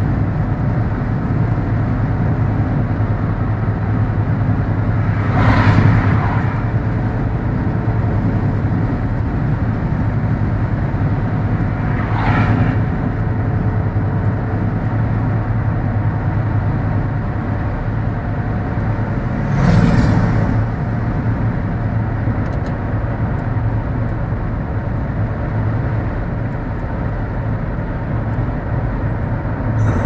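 Mercedes-Benz W124 driving steadily along a country road: a constant low hum of engine and tyre noise. Three brief louder whooshes come about six, twelve and twenty seconds in as vehicles pass the other way.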